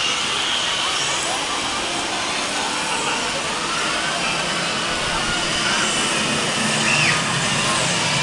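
Indistinct chatter of a crowd of adults and children, no single voice clear, over a steady rushing noise.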